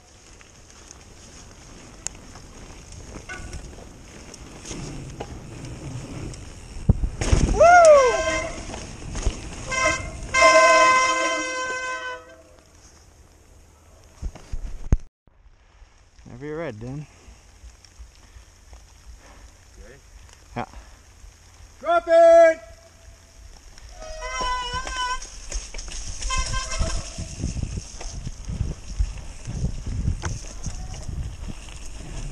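Mountain bike riding down a dirt trail, with rolling rumble and wind rush on a helmet camera's microphone. Several wordless whoops and hollers from the riders cut through it, the loudest about 8 and 11 seconds in, with more near 22 and 25 seconds.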